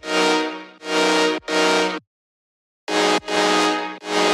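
Future bass sawtooth synth chords played in a choppy rhythm of sustained chord hits, each swelling in and cutting off sharply. There is a pause of nearly a second about two seconds in.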